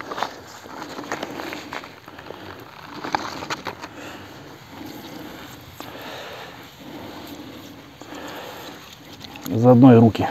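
Water spraying from a Golden Spray perforated irrigation hose, a steady hiss with water pattering on the soil. Scattered short clicks and rustles come from the hose being handled. A man's voice comes in near the end.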